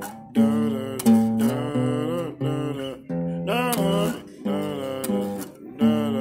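Small-bodied acoustic guitar played in strummed and picked chords, with a man singing over it.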